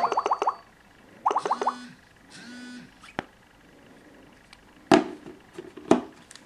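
Brief bursts of warbling electronic sound from the phone's call audio in the first two seconds, then a faint click about three seconds in and two sharp knocks near five and six seconds as the Galaxy S4's flip cover is shut and the phone is handled on the table.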